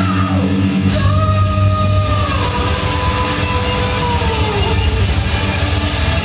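Heavy metal band playing live and loud: drum kit and distorted electric guitars, with a long held note coming in about a second in that steps down in pitch and slides lower near the end.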